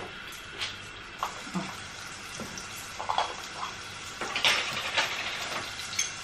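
Chopped frozen onion frying in oil in a cooking pot, a steady sizzle, with a few light clicks and knocks and a louder noisy patch about four and a half seconds in.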